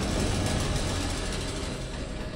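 Edited-in transition sound effect under an animated title card: a noisy, rumbling sound with a heavy low end that swells just after the start and slowly fades.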